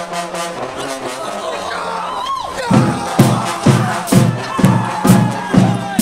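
Marching band trombone section holding sustained notes, with a sliding fall in pitch about two seconds in. Just under three seconds in, the band comes in with a strong, regular beat about twice a second.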